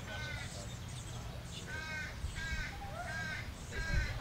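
A crow cawing repeatedly: one caw at the start, then a run of four caws about half a second apart from about two seconds in.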